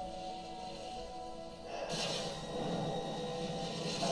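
A TV episode's dramatic score of sustained, held tones. About two seconds in, a sudden rushing, hissing sound effect joins it and swells.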